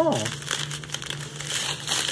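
Small clear plastic zip-lock bags of diamond painting drills crinkling as they are handled, an uneven run of crackly rustles.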